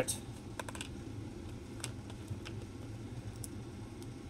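LEGO plastic bricks clicking as they are handled and pressed together: scattered sharp little clicks, a quick run of three or four about half a second in, then single clicks spread out, over a low steady hum.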